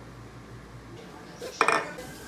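Dishes and cutlery clinking at a kitchen counter: a quick cluster of sharp clatters in the second half, after a second of faint room tone.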